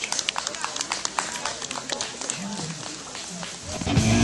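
Wood fire crackling in a fire pit, a steady run of sharp pops and snaps, with faint voices talking in the background.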